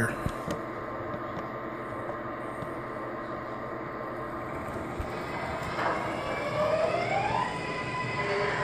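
MTH R-142A model subway train starting off over a steady hum. About six seconds in, a subway-style electric motor whine begins to rise in pitch as it accelerates away.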